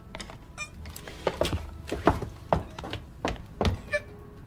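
A woman choking on a mouthful of food: a run of short, sudden thuds and strained gasping sounds, irregularly spaced, as she struggles for breath.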